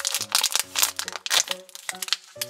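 Crinkly plastic wrapper of a toy blind bag crackling as hands tear it open and dig inside, with soft background music holding steady notes underneath.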